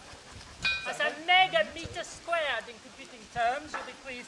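A few short, high-pitched vocal calls with no clear words, rising and falling in pitch, over faint background murmur.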